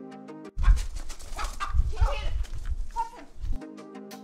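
A dog barking over a heavy wind rumble on the microphone, in a three-second break in the background music that starts about half a second in.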